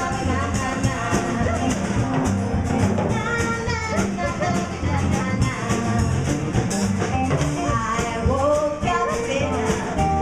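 Live band playing an upbeat song on two acoustic guitars and a drum kit with a steady beat, a woman singing at the microphone.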